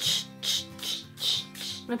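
Aerosol hairspray can sprayed onto hair in a run of short hissing bursts, about two or three a second, over background music.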